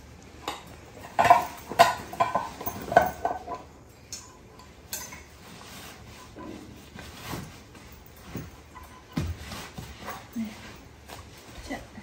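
Crockery and cutlery clinking and knocking together as they are packed. There is a cluster of sharp clinks in the first three seconds, then quieter handling and a single knock later on.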